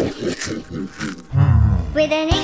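Cartoon baby zombie's voiced sound effects while drinking from a bowl: a quick run of short, falling gulps, then a loud, low growl in the last half-second.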